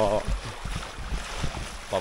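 Wind buffeting the microphone in uneven low rumbles over the steady wash of a shallow stream running over rocks.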